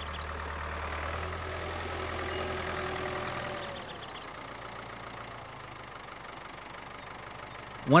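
A low, steady mechanical hum like a running engine or machine, dropping in level about four seconds in, with faint higher tones above it.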